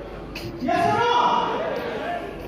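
A man's voice through a microphone and PA in a large hall, calling out a drawn-out phrase to the audience, with a short sharp knock just before it.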